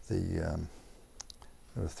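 A man's voice says one word, then pauses; during the pause two short, quiet clicks sound a little over a second in, before speech resumes at the end.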